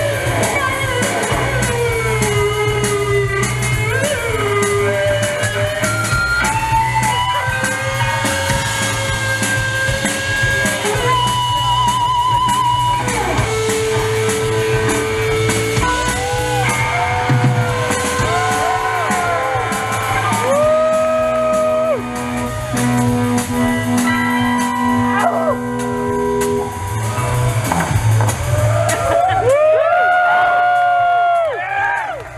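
A live rock band playing loud: two electric guitars, bass guitar and drum kit. The guitars hold long notes and bend them over a steady bass line and constant cymbals, and about halfway through one note wavers quickly.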